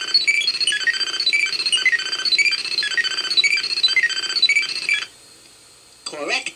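Mego 2-XL robot toy playing a fast, tinkling waiting tune from its 8-track tape through its small speaker while the answer is awaited. The tune cuts off suddenly about five seconds in, leaving a faint hum.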